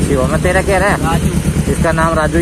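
A motorcycle engine idling steadily, a low even rumble under close talking.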